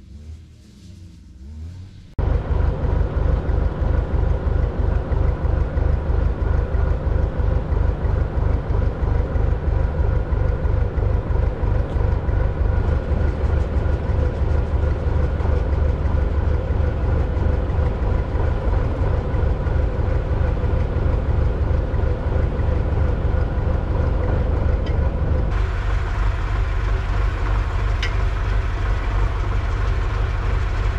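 Diesel engine of an excavator running steadily close by, with even firing pulses and a strong low rumble; it starts suddenly about two seconds in.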